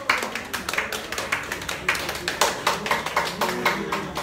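A small group of people clapping: quick, irregular claps that start suddenly and keep on.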